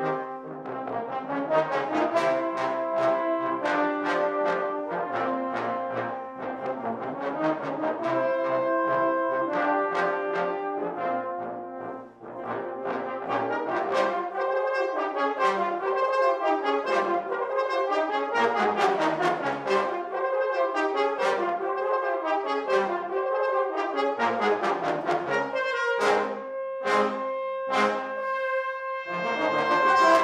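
Trombone choir playing in close harmony. It opens with full, held chords, then after a brief dip moves to shorter notes with little low bass, and near the end plays a run of short, separated chords.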